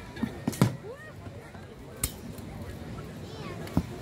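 Sharp wooden knocks of reenactment weapons striking wooden round shields in staged Viking sword-and-spear combat: a few close together in the first second, one about two seconds in and another near the end, over a murmur of voices.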